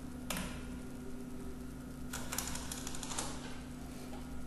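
Computer keyboard keys clicking: a single keystroke, then a quick cluster of several about two seconds in and one more near the end, over a steady low hum.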